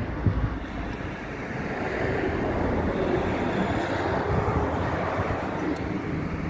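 Steady rushing noise of wind buffeting a phone's microphone, mixed with the rumble of highway traffic, swelling slightly a couple of seconds in.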